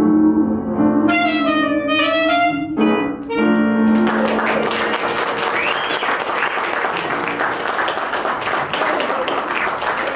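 A small jazz group (singer, piano and clarinet) ends the song on held closing notes, then the audience applauds from about four seconds in until the end.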